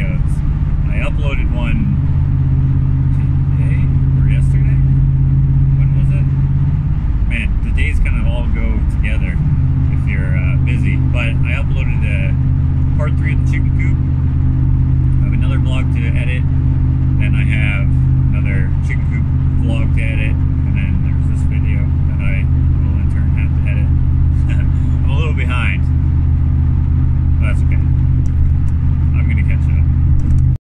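Steady engine and road drone inside a moving vehicle's cab, a low hum that breaks up for about two seconds around seven seconds in before settling again.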